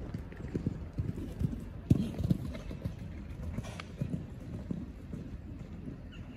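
Horse hooves thudding dully on a sand arena as a horse is ridden at a trot, an uneven run of low thuds, the loudest about two seconds in.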